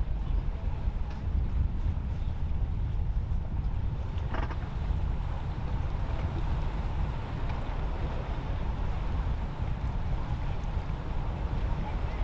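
Wind buffeting the microphone: a steady low rumble with no pitch to it, and one faint knock about four seconds in.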